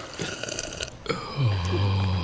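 A person burping: one long, low burp that starts about one and a half seconds in, after a few quieter wet sounds.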